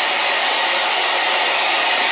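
Handheld iTeraCare THz Health Blower running, its small fan blowing a steady hiss of air.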